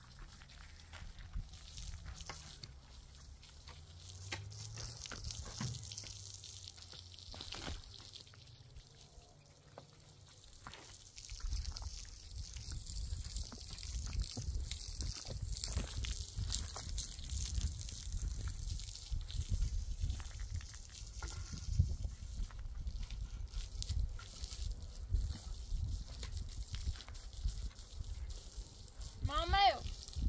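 Water running from a garden hose and splashing onto a concrete slab, wetting its surface; the flow noise grows denser and steadier about a third of the way in.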